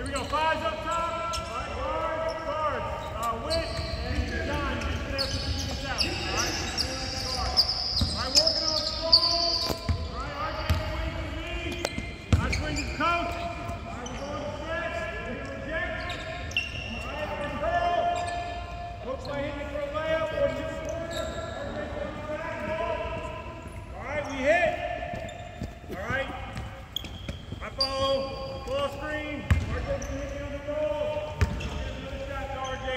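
Basketballs dribbling and bouncing on a hardwood court in a large arena, with players and coaches talking and calling out over the bouncing.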